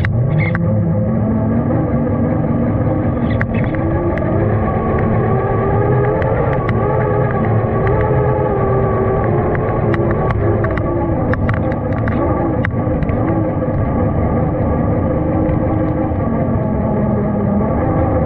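Electric motor and gear whine of a Traxxas TRX-4 RC crawler heard close up from its onboard camera, the pitch rising and falling with the throttle, with scattered sharp clicks.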